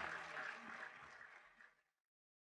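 Audience applause at a live concert, fading down and then cut off abruptly to silence near the end.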